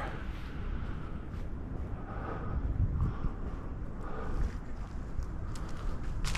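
Steady low outdoor rumble, with a few faint scattered scuffs and ticks.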